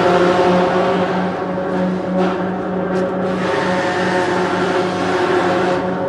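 A machine's motor running steadily, a constant pitched hum that pulses a few times a second, over a hiss.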